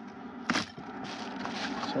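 Coins clinking in a hand and in a plastic carrier bag, with one sharp clink about half a second in, followed by the bag rustling and softer clinks as a hand rummages among the coins.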